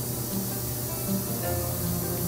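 Soft background music with sustained held tones, over a steady hiss.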